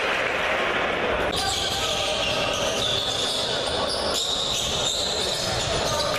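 Live game sound from a basketball game in a gym: a ball bouncing on the hardwood court under a steady wash of voices from the crowd and bench. The sound changes abruptly about a second in, as the footage cuts.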